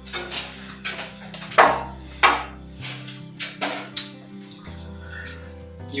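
Background guitar music with a string of sharp metallic knocks and clatters, the loudest about a third of the way in. The knocks come from the machine's sheet-metal back cover and hand tools being handled and set down.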